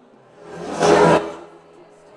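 A loud whoosh of noise that swells up and dies away within about a second, over faint background music.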